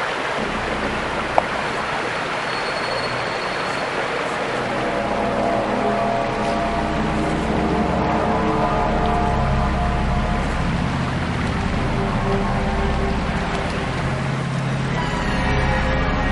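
Steady rush of a creek's flowing water, with eerie music of low drones and held tones fading in and building from about five seconds in. A single sharp click about a second and a half in.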